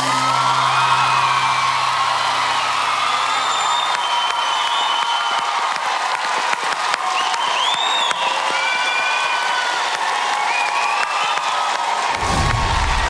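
Studio audience and judges applauding and cheering at the end of a live song, with high shouts rising above the clapping. The band's last low note fades out in the first few seconds.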